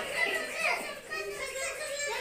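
Several children's voices talking over one another: classroom chatter from pupils.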